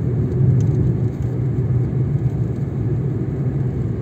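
Steady low rumble of a car being driven on an open road, engine and tyre noise heard from inside the cabin.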